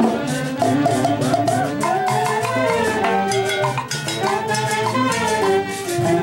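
A brass band playing a dance tune at full volume, with drums keeping a steady beat under the horns.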